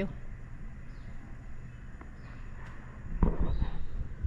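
Outdoor ambience with a few faint, short, high chirps, and a brief louder rustle about three seconds in.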